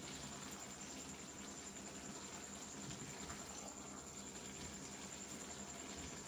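Ridge gourd, tomato and onion cooking in their own juices in a steel karahi over a gas flame: a faint, steady soft sizzle and hiss, with a thin high whine above it.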